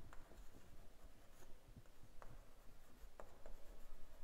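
Chalk writing on a blackboard: faint scratching with a few short, sharp taps as the chalk strikes the board.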